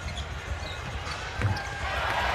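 Basketball bouncing on the hardwood court under a steady arena crowd murmur, with one sharper thump about one and a half seconds in.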